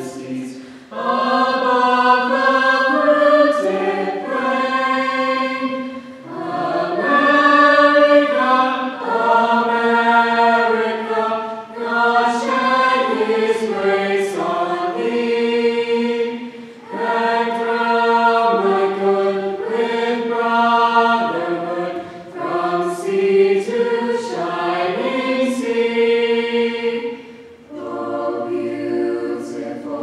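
A mixed-voice high school choir singing in sustained phrases of about five seconds, each followed by a brief breath pause.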